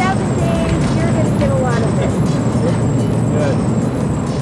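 Steady road and wind rumble of a vehicle driving alongside the riders, with short snatches of voices and laughter over it.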